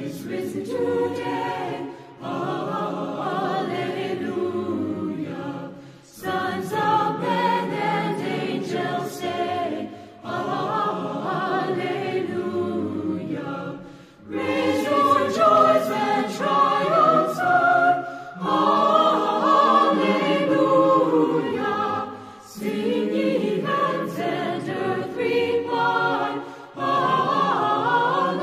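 Choir singing in phrases of about four seconds, with short pauses between them.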